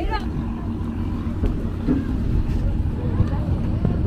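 A fishing boat's engine running steadily with a low drone, under people's voices talking in the background.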